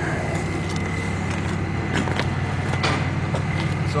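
An engine idling steadily, a low even hum, with a few light ticks over it.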